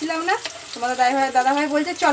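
Potato chunks sizzling as they fry in oil in a steel wok, a ladle turning them. A woman's voice talks over it and is louder than the frying.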